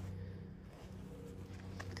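Deer buck eating chopped butternut squash from a plastic bucket: a few faint crunches and knocks over a steady low hum.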